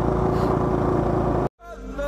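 Motorcycle riding noise, a steady engine and wind rumble, which cuts off suddenly about one and a half seconds in; music begins just before the end.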